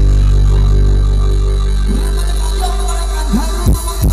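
Live band music over a PA: a long held low bass note with the beat dropped out, then drum thumps come back in near the end.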